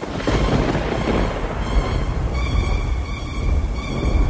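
Thunder and rain sound effect: a crack of thunder breaks in suddenly and rumbles on under a steady hiss of rain, with held tones of eerie background music coming in about halfway through.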